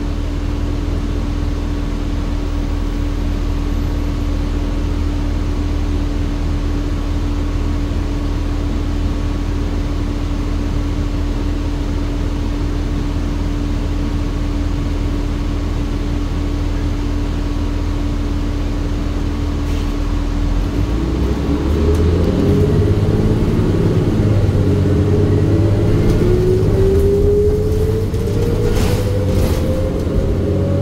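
Compressed-natural-gas city bus heard from inside the cabin: the engine idles with a steady hum for about twenty seconds. The bus then pulls away and accelerates, louder, with a whine that climbs steadily in pitch over the last several seconds.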